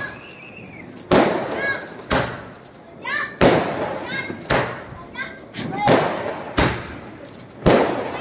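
Aerial fireworks going off overhead: a series of sharp bangs, roughly one a second, each followed by a short fading tail.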